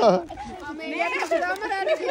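Speech only: people chatting, with a few voices talking.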